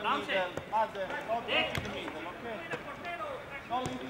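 Small-sided football on an artificial pitch: the ball is kicked several times with sharp thuds, among short calls and shouts from the players.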